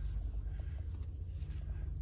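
Faint rustling of a thick twisted rope being drawn through its own coil, over a steady low rumble.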